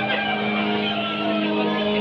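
A steady, even drone with a held low tone, with no clear words over it.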